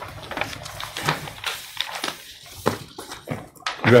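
Scattered small knocks, clicks and rustles of papers and objects being handled on a meeting table and picked up by the table microphones, irregular and several a second.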